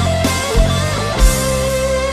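Live rock band playing an instrumental passage: electric guitars, bass guitar and drums with a steady kick drum beat, and a lead line holding one long note from about a second in.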